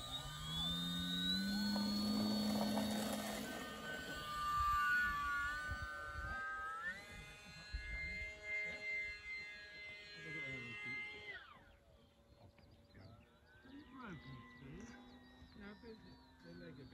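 Wot-4 radio-controlled model aeroplane's motor and propeller, rising in pitch as the throttle opens for take-off, then running at a steady pitch with a few step-like changes. The sound breaks off suddenly about eleven seconds in, leaving only faint sound.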